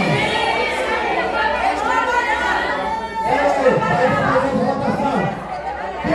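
Several people talking at once in a large hall, with no single clear speaker.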